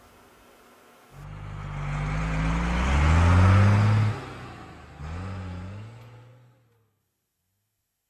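A motor vehicle accelerating. The engine note starts about a second in and rises steadily in pitch, then drops off about four seconds in. It rises again briefly and fades away.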